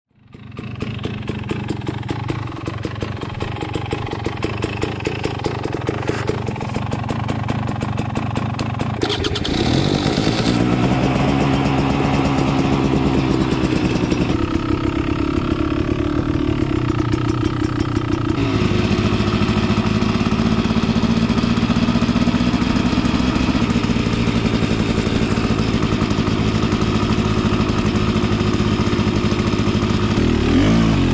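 Beta Xtrainer two-stroke dirt bike engine running, heard from the rider's position. It fades in at a low steady speed, revs up about nine seconds in as the bike pulls away, and rises again in steps before settling into a steady cruise.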